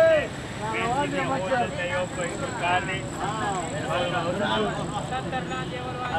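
Men talking back and forth, over steady background noise.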